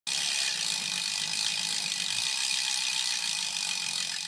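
Bicycle freehub ratcheting steadily as a rear wheel spins freely, a rapid run of clicks.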